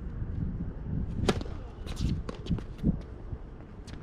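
Tennis being played on an outdoor hard court: a crisp racket-on-ball hit about a second in, then a series of quieter sharp ticks of the ball and shoes on the court.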